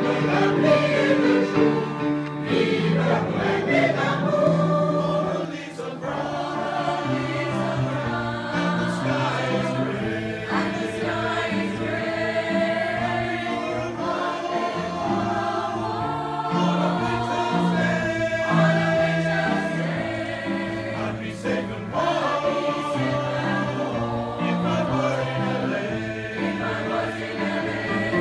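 Mixed choir singing in parts with piano accompaniment.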